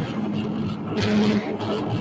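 Improvised electronic noise music from electric guitar and effects pedals: a dense, engine-like drone with a steady low hum, and a burst of hiss about a second in.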